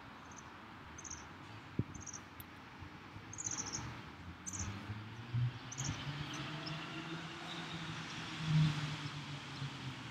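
Faint short high chirps of a small bird, repeating every second or so, over a low hum that grows louder in the second half.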